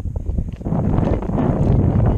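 Wind buffeting a chest-mounted GoPro's microphone: a loud, rough rushing that picks up about half a second in.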